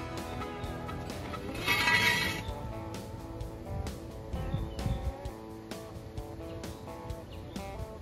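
Background guitar music, with a brief louder noise about two seconds in.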